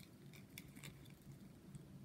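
Near silence: room tone with a few faint, light clicks in the first second, fingers handling the small sewing trinkets hanging from a fabric doll.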